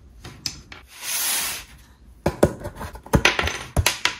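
Thin laser-cut plywood rubbing and sliding over a wooden tabletop in one brief swish about a second in. It is followed by a quick run of sharp wooden clicks and taps as the pieces and the plywood sheet are handled.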